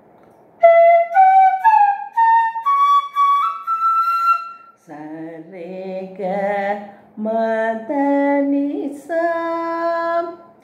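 Carnatic bamboo flute playing a scale of about seven notes that steps upward over an octave, the ascending scale (arohanam) of raga Sri Ranjani. Then a woman's voice, wavering and half sung, with a short laugh near the end.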